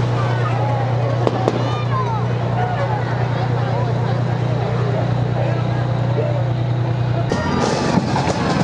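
Fire engine's diesel engine running at a steady low drone as the truck rolls slowly past, with crowd voices over it. About seven seconds in the sound cuts to bagpipes.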